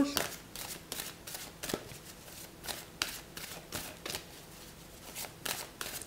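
A deck of tarot cards being shuffled by hand: a run of soft, irregular card flicks and slaps that thins out in the last second or so.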